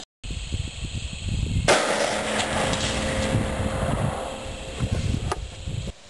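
A single shot from an Eddystone US Model of 1917 bolt-action rifle in .30-06, about two seconds in, followed by a sustained noisy tail that fades over about three seconds.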